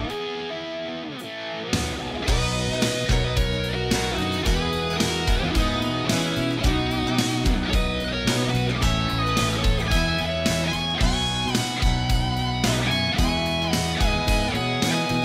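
Hard rock band playing an instrumental passage with no vocals: an electric guitar plays alone for about the first two seconds, then drums and bass come back in under an electric guitar lead.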